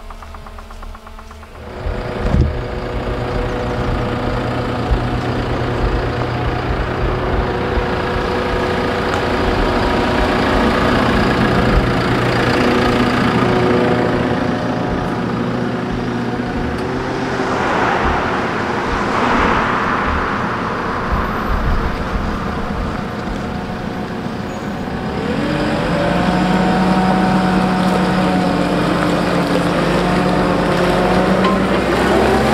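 JCB telehandler's diesel engine running as the machine drives off. It gets loud about two seconds in, with a rushing noise about two-thirds of the way through. The engine note rises near the end as it pulls out through the gateway.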